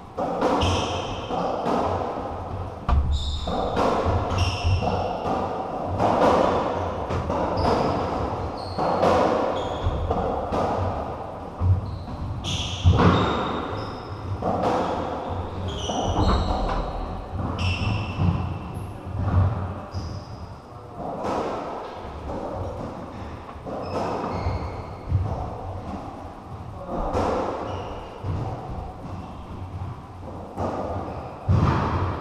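Racketball rally in a squash court: the ball struck by the rackets and hitting the walls and wooden floor, sharp impacts every second or so, with trainers squeaking on the floorboards between shots and the hits ringing in the enclosed court.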